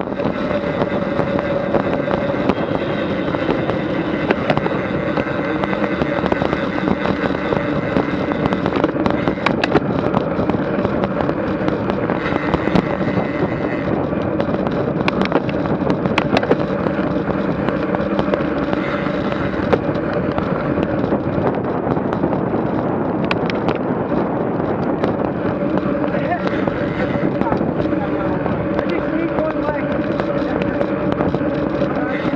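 Road-bike riding noise picked up by a bike-mounted action camera in a fast-moving pack: steady wind and road rush with a constant hum, and scattered clicks and rattles throughout.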